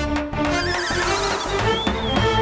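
Comedic background score with a steady beat. About half a second in, a high, warbling, wavering sound effect plays over it.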